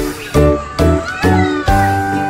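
Background music with a bouncy, regular beat and held bass notes changing about twice a second, with a high sliding sound over it in the first second or so.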